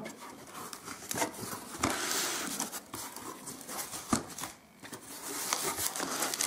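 A cardboard parcel being handled and its flaps opened by hand: cardboard rubbing and rustling, with a few sharp clicks and knocks.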